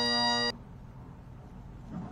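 Bagpipes sounding a steady held chord that cuts off suddenly about half a second in, leaving faint background noise.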